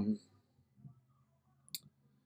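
A man's drawn-out "um" trailing off, then a quiet small room with one short, sharp click near the end.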